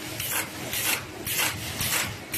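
Automatic paper crosscutting (sheeter) machine running, cutting paper from the roll into sheets: a rasping swish repeats about twice a second, one per cut sheet, over a steady mechanical hum.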